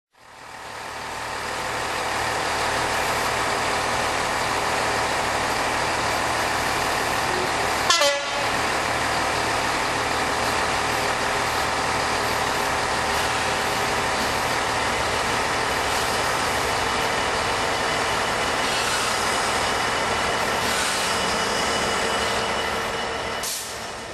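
A Class 66 diesel-electric locomotive's EMD two-stroke V12 engine running as the locomotive draws in, with a short loud toot, likely its horn, about eight seconds in.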